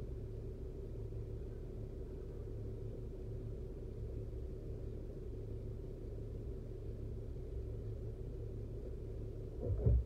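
Car idling while stopped at a red light: a steady low engine hum heard from inside the cabin. A brief louder burst comes near the end.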